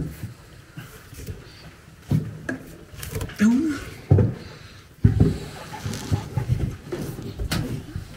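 Someone climbing a vertical wooden ladder through a hatch: about half a dozen irregular wooden knocks and thuds as hands and feet land on the rungs and boards, with a brief murmur of voice in the middle.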